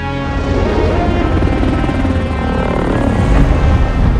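A helicopter's rotor blades chopping in a fast pulse, growing louder toward the end, under dramatic film-score music.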